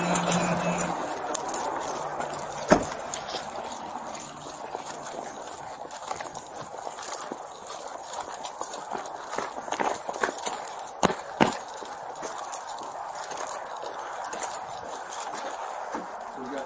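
An officer's footsteps on snow and pavement, picked up close by a body-worn camera's microphone along with the rustle of clothing and gear. A few sharper knocks stand out, the loudest about three seconds in and two more around eleven seconds in.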